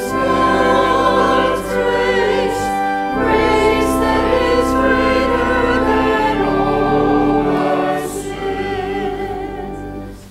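Church choir singing with accompaniment, the final chord held and fading away near the end.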